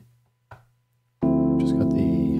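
A keyboard chord sample played from a Roland SP-404 mk2 pad cuts off, and after about a second of near silence a sustained keyboard chord starts again, heard dry with the JUNO Chorus effect's balance set fully dry.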